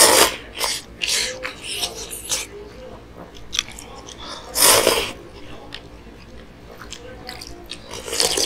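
Ramen noodles slurped loudly off chopsticks, picked up close by a chest-worn lapel mic. There is one long slurp at the start and another about four and a half seconds in, with short slurps and wet chewing between.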